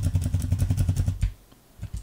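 Rapid, evenly repeated computer keyboard key presses, about ten a second, each with a dull thump. They pause briefly a little past halfway, then start again.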